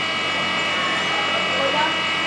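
Electric blower fan of a model-aircraft flight exhibit running steadily: a constant rushing airflow with several steady high whining tones from the fan.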